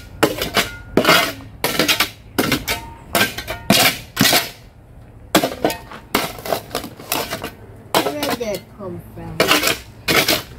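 Steel shovel blade repeatedly jabbed into stony, gravelly soil, each stroke a sharp clink and scrape of metal on rock, about two strikes a second with a brief pause near the middle.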